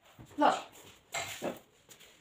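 A short, high-pitched cry that falls in pitch about half a second in, followed by a brief rustling sound.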